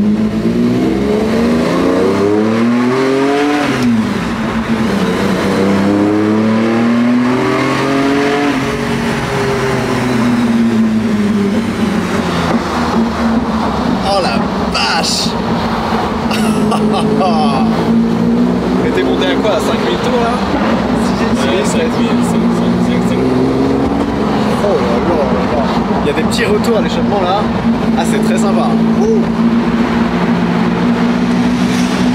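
Lamborghini Diablo V12 heard from inside the cabin, revving up twice, each time falling away sharply, then pulling along steadily with gentle rises and falls in engine speed.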